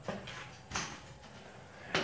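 Quiet pause: faint background noise, with one brief soft rustle a little under a second in.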